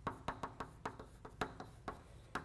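Chalk writing on a blackboard: a faint, quick run of taps and clicks, about five or six a second, as the chalk strikes and drags across the slate.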